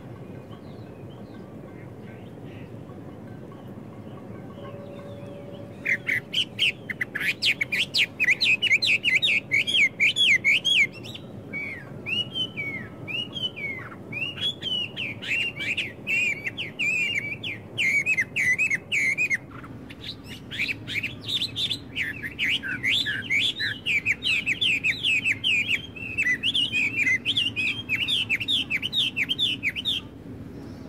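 Songbirds chirping in fast runs of short, high, repeated notes, starting about six seconds in and going on with a brief pause in the middle, over a steady low background rumble.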